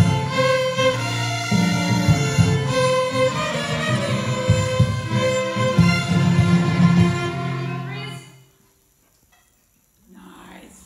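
A section of children's violins playing a passage together in unison, ending about eight seconds in.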